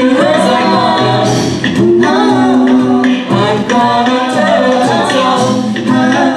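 A six-member a cappella group singing live through microphones: sustained sung chords underneath and a lead melody on top, over a steady vocal-percussion beat.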